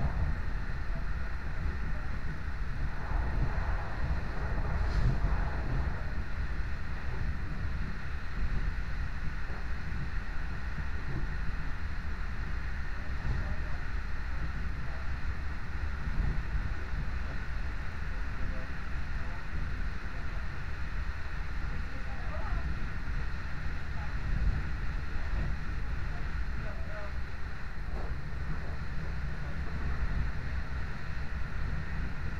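A passenger train running at speed, heard from inside the carriage: a steady rumble of the wheels on the track with a rushing hiss of wind.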